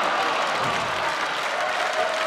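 Live theatre audience applauding steadily in response to a punchline.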